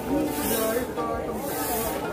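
Busy indoor market ambience: overlapping background voices and music from the stalls, with a hiss in the highs that swells and fades about once a second.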